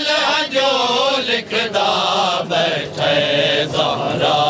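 Male voices chanting a Punjabi noha, a Shia mourning lament, in long sung phrases broken by short breaths about once a second.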